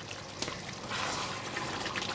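A thick, reduced mutton curry bubbling as it simmers in a steel pan. A wooden spatula stirs through it in the second half, making the sound a little louder, with one sharp click about half a second in.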